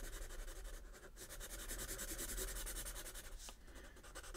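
Sharpie marker rubbing on sketchbook paper in quick, continuous back-and-forth strokes, filling in a solid black area.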